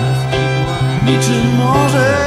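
Live band music with a bowed violin and guitar playing held notes over a sustained low bass note.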